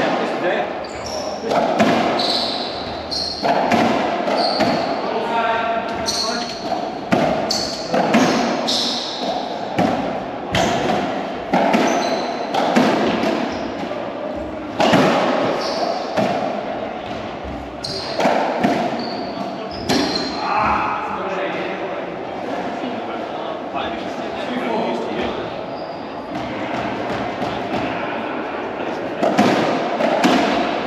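Racquetball rally in an enclosed court: the ball is struck by racquets and smacks off the walls in a run of sharp, echoing hits, with short high squeaks from shoes on the wooden floor. The hits thin out after about twenty seconds.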